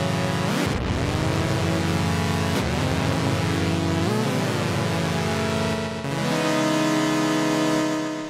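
Modal Argon8 wavetable synth playing held sine-wave chords through its stereo delay in the 'colour' mode. The repeats saturate and smear as they feed back. The pitch swoops briefly at each of several chord changes.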